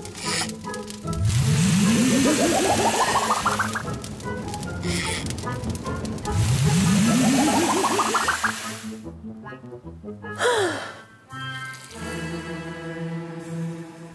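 Cartoon water-cannon sound effect: a rush of spraying water with a rising tone beneath it, heard twice, starting about one second in and again about six seconds in, over background music. A brief falling glide follows about ten seconds in.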